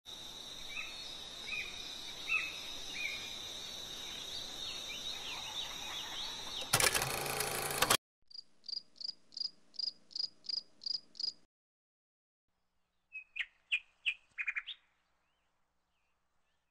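Nature ambience: a steady high insect drone with short bird chirps over it, broken about seven seconds in by a loud rush of noise lasting about a second that cuts off sharply. Then a high call repeated about three times a second for some three seconds, and a short cluster of lower bird calls near the end.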